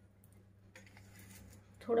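Near silence: kitchen room tone with a steady low hum and a few faint clicks. A woman speaks a single word near the end.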